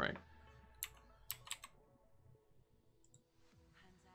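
Computer mouse clicks: one about a second in, then three close together around a second and a half, as players are picked on a website.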